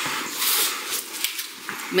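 Rustling and scraping of a large cardboard presentation box being handled and its lid lifted open, with a few light knocks.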